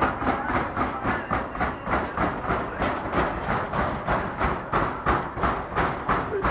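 Steady rhythmic banging, about three sharp strikes a second, over the sound of a packed crowd.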